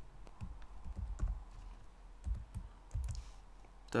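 Typing on a computer keyboard: scattered key clicks with a few dull knocks of keys bottoming out, as code is entered.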